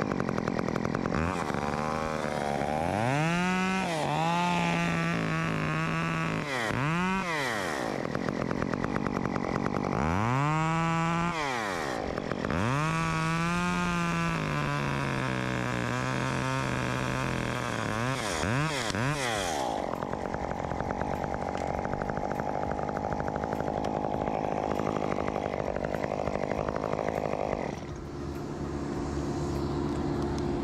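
Two-stroke chainsaw revved up and down repeatedly, held at speed between revs while cutting into the limb. Near the end the engine drops back to a steady idle.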